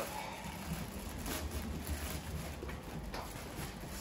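Clear plastic poly bag crinkling and rustling as it is pulled open by hand, with scattered small crackles, over a steady low hum.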